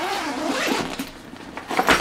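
A Beis backpack's main zipper being pulled open in one long rasping run around the bag, quieter near the end with a few clicks and a knock as the bag is opened flat.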